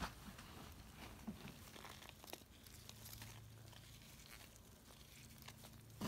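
Faint rustling and crinkling of dry shredded cardboard and coconut coir bedding as a gloved hand pulls it back in a worm composting bag.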